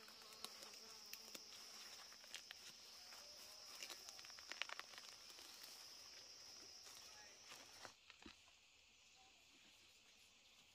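Faint, steady high-pitched insect buzz with scattered soft ticks and scrapes of a small hand tool digging in garden soil; the buzz cuts off suddenly near the end.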